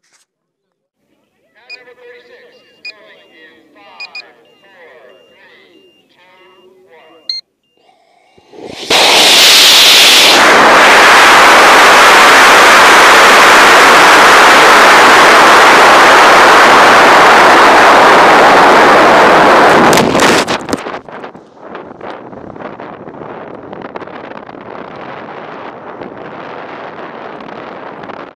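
Rocket motors burning, picked up by the camera riding on the rocket: a sudden, very loud, steady rush of exhaust noise starts about nine seconds in and holds for about eleven seconds. It cuts off abruptly, leaving a quieter steady rush of air. Before ignition there are faint muffled voices and the sound of hands handling the camera on the airframe.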